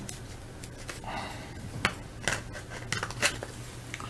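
A trading card being slid into a soft plastic sleeve and then into a rigid plastic top loader: plastic rustling and several sharp clicks, over a low steady hum.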